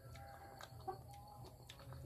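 Faint bird calls in the background, a few drawn-out notes in the first second or so, over near quiet with a few soft clicks.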